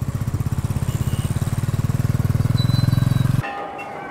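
Motorcycle engine running with a rapid, even low-pitched beat that grows louder, then cuts off suddenly near the end as music begins.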